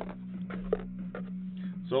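A few light taps and knocks of a hand against a cardboard case and the sealed card boxes packed inside it, over a steady low hum.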